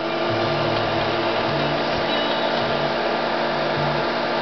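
Steady whir of an electric cooling fan running, with a faint low hum under it.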